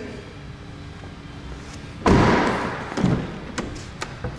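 A car door of a 2014 Chevrolet Impala shutting with a sudden thud about two seconds in, followed by two lighter knocks.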